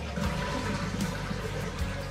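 Toilet flushing: a steady rush of water into the bowl.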